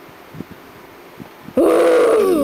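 A person's sudden loud yell, about one and a half seconds in, held at a steady pitch after a quick rise. Faint rustling comes before it.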